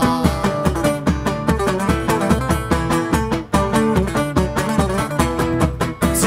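Live Cretan folk music: a purely instrumental passage, with laouta plucking a quick melody over a steady daouli drum beat.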